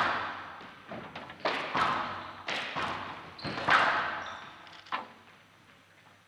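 Squash rally: the ball is hit by the rackets and smacks off the walls of a glass court, a sharp impact about once a second with a hall echo after each. The hits stop about five seconds in.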